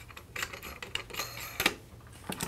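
Light metallic clicks and taps as the lock ring of a brass Porter Cable-style guide bushing is screwed on by hand under a DeWalt router's base plate, a handful of short ticks with the loudest near the end.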